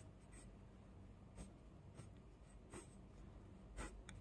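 Faint pencil strokes on a paper page: a few short, soft scratches against near-silence, the one near the end the most distinct.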